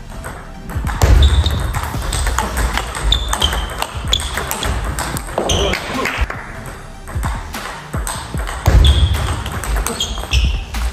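Table tennis rally: a string of sharp clicks as the ball is struck by the bats and bounces on the table, over background music.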